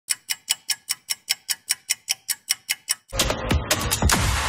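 Crisp clock-style ticking, about five ticks a second, then electronic intro music that cuts in about three seconds in.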